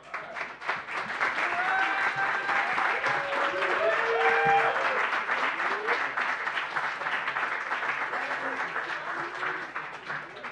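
Audience applauding, starting suddenly and holding steady, with a few voices cheering over the clapping in the middle.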